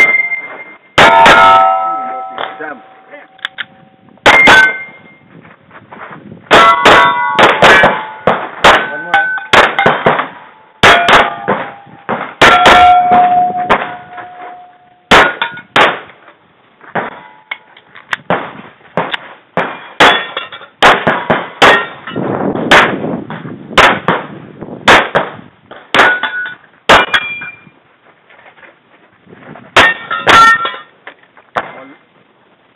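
Semi-automatic pistol firing string after string of quick shots, with steel plate targets ringing after the hits.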